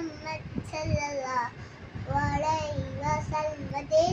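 A young boy singing solo, his voice holding long notes that bend up and down in pitch, with brief breaths between phrases.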